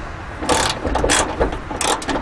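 Socket ratchet wrench working a bolt at a truck's hood hinge, its pawl clicking in about three short runs.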